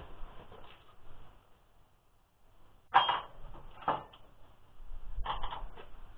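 A few sharp knocks and clatters of things being moved about in a shed while searching for a missing part. The loudest comes about three seconds in, with another about a second later and a short cluster near the end.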